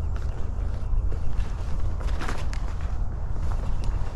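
Horses walking on soft, deep arena dirt: faint, muffled hoof falls and a few light ticks over a steady low rumble.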